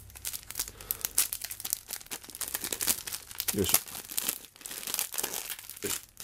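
Clear plastic film wrapping being crinkled and torn open by hand, a dense run of crackles with no pause.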